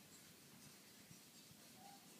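Near silence: faint room tone during a pause in the dance music.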